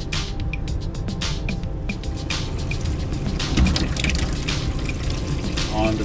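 Water running steadily from an RV bathroom sink faucet into the basin, flushing pink antifreeze out of the water lines during dewinterizing. Background music plays underneath.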